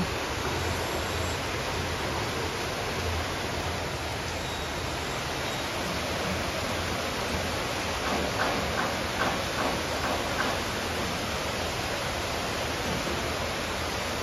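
Steady heavy rain, an even unbroken hiss.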